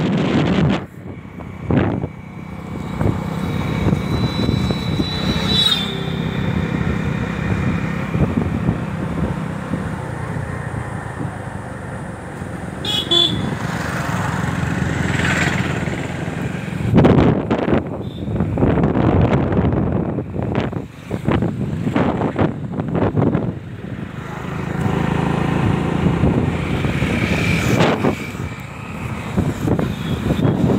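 Motorcycle engine running while riding, with wind buffeting the microphone in gusts. Short vehicle-horn toots sound a few times along the way.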